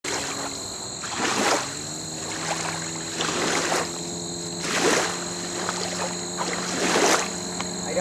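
Distant 10 hp outboard motor on a small 8 ft hydroplane running across a lake, rising in pitch about a second in and then holding a steady drone. Small waves splash against the shore in regular washes a little over a second apart.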